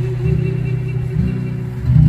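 Amplified live acoustic guitar strummed in sustained chords, the chord changing about a second in and again near the end.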